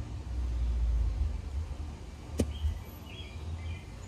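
Wind buffeting the microphone, an uneven low rumble that swells in the first second or so. A single sharp click comes about two and a half seconds in, followed by a few faint high chirps.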